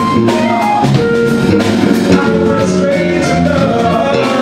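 Live soul-jazz band playing: a male voice singing at the microphone over keyboards, electric bass, drums and guitar.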